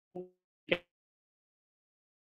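Two brief clipped fragments of a man's voice, the second louder, each cut off into dead silence, as the speech of an online stream drops out.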